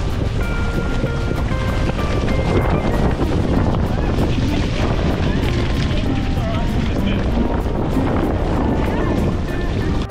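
Loud wind buffeting the microphone, with rushing water noise, and background music with a held melody faintly underneath.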